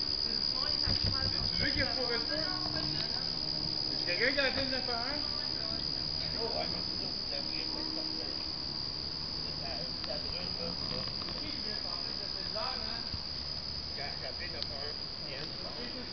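Crickets chirring in a steady, unbroken high-pitched chorus, with faint distant voices now and then.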